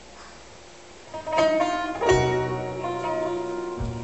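Oud played live. After about a second of quiet, loud plucked notes ring out one after another, with a low note sounding under them and a fresh note struck near the end.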